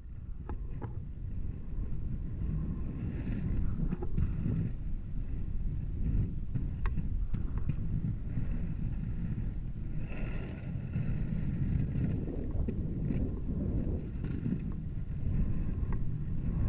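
Inline skate wheels (90 mm Undercover urethane wheels) rolling over asphalt: a steady low rumble with scattered clicks, mixed with some wind on the microphone.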